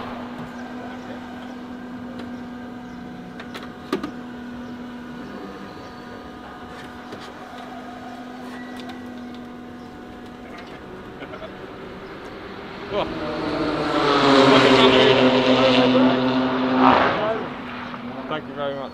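Race car engine running in a steady hum, then a much louder engine sound swelling up from about two-thirds of the way in, holding for a few seconds and dropping away near the end.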